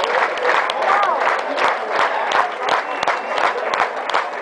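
An audience applauding with dense, steady clapping, with voices calling out from the crowd over it.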